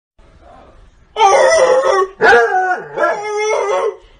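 A cat yowling in three drawn-out, wavering calls that sound like "awuvu huu", starting about a second in.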